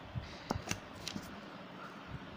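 Light rustling of a hand and ballpoint pen moving over a sheet of paper, with about five soft ticks in the first second and a half.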